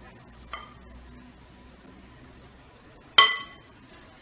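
A spoon clinking against a glass mixing bowl: a light tap about half a second in, then one sharp, ringing clink just after three seconds that dies away quickly.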